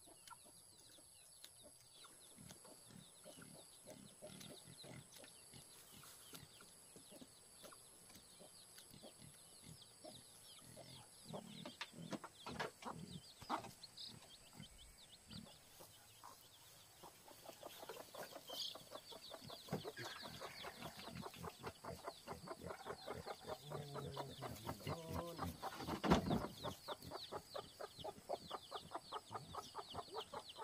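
Domestic chickens: a hen clucking and her small chicks peeping, faint at first and growing into busy, rapid peeping in the second half. One loud sharp knock near the end.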